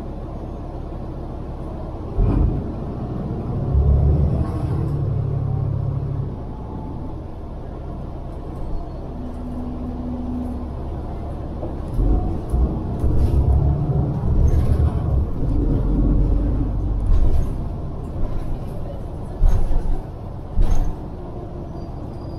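City transit bus heard from inside, its engine and tyres making a steady low rumble as it drives. Short jolting thumps come through the body as it rides over the road, two of the sharpest near the end.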